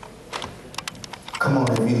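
A few scattered light taps and clicks, then a man starts speaking loudly over a microphone about one and a half seconds in.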